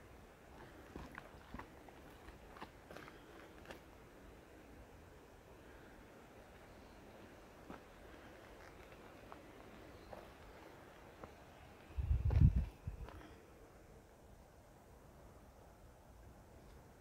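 Faint footsteps with light crackles and snaps on a dry forest floor of pine needles and twigs, clustered in the first few seconds. About twelve seconds in there is a brief low rumble, the loudest sound in the stretch.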